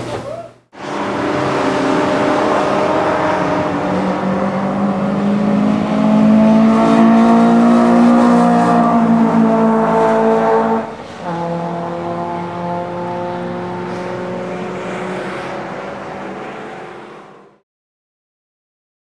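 Racing car engines running on a racetrack at sustained high revs, heard from trackside. The engine note climbs slowly for several seconds, breaks off abruptly about eleven seconds in, then carries on steadily until it stops near the end.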